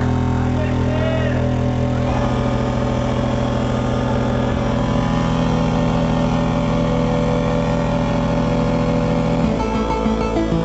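Loud live 8-bit chiptune dance music from a DJ setup: layered sustained synth tones over a steady buzzing bass, the sound filling out about two seconds in and changing again near the end.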